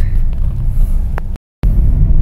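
Steady low rumble of a car being driven, heard from inside the cabin, broken by a brief gap of silence about one and a half seconds in.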